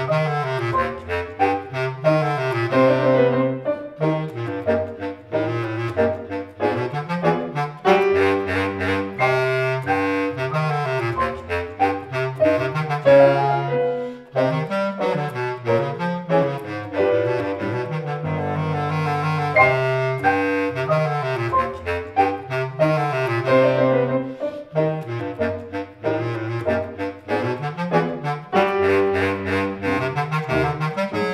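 Bass clarinet and piano playing a march: the bass clarinet carries the tune over piano chords struck in a steady rhythm, with a low line moving underneath.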